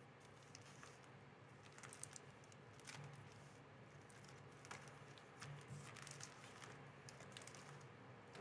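Faint, irregular crinkles and soft ticks of foil-wrapped trading-card booster packs being shuffled and moved by a gloved hand, over a low steady hum.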